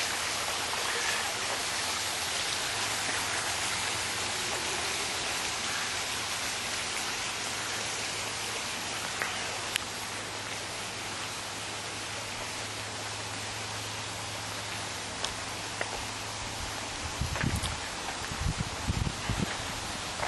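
Steady rush of running water from a garden pond's water feature, growing slightly fainter. A few low thumps come near the end.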